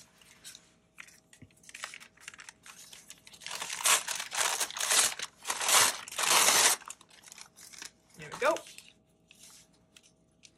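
Brown kraft paper being crumpled and torn by hand: crackling, rustling handling noise, light at first and heaviest through the middle few seconds.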